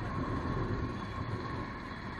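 TVS Star City Plus motorcycle's single-cylinder four-stroke engine running at cruising speed, under a steady rush of wind and road noise.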